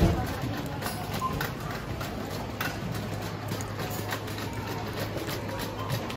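Metal supermarket shopping trolley being pushed over a hard floor, its wheels and wire basket rattling with irregular small clatters. Underneath is a steady low hum and the background murmur of the shop.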